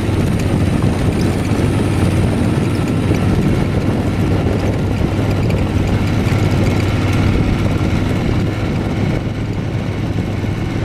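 Motorcycle engine running steadily at riding speed along a dirt track, a constant low hum with a rushing haze of wind and road noise over it.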